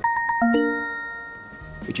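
Short electronic chime jingle: a few quick plucked notes, then a held chord that fades out over about a second and a half.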